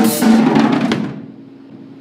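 Drum kit played in a very fast, jumbled flurry of tom, snare and cymbal hits lasting about a second: a deliberately over-fast metal drum fill. It then stops and the drums and cymbals ring out.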